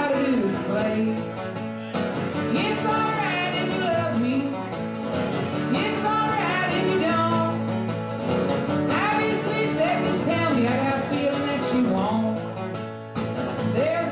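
Steel-string acoustic guitar strummed steadily through an instrumental passage of a live country-folk song.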